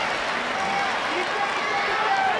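Large arena crowd: a steady hubbub of many voices, with a few single shouts rising above it.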